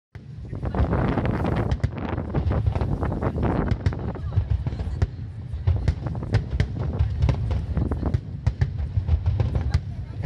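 Fireworks display: many quick bangs and crackles over a steady low rumble, densest in the first few seconds.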